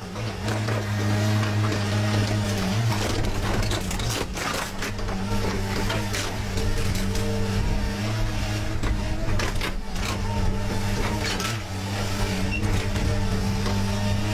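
Tracked excavator with a car-dismantling grab running under load: a steady low engine and hydraulic drone, with repeated crunches, snaps and knocks of sheet metal as the grab tears a car body apart.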